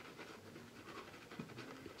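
Faint, soft scratchy swishing of a badger hair shaving brush working soap lather over the face.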